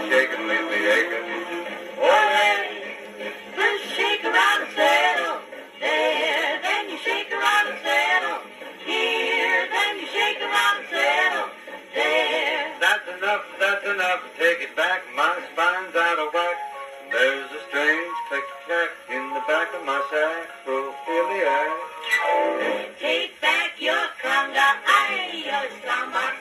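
A 1940s popular dance-band song playing from a 78 rpm record on an acoustic horn gramophone, continuous lively music with a thin sound that has almost no bass.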